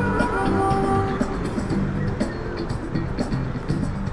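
Street performer's music: a few held notes of different lengths sounding over traffic noise.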